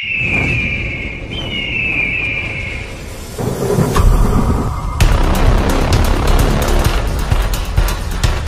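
Logo intro sting: two falling high tones, then a swell into a deep boom about four seconds in, followed by fast, dense music with a driving beat.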